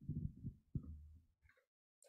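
Microphone handling noise: a quick, irregular run of faint low thumps and rumble, with a brief low hum in the middle, stopping about one and a half seconds in.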